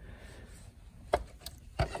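A few light taps and clicks of a hand on the plastic housing of a car's climate control unit, the first about a second in and the rest near the end.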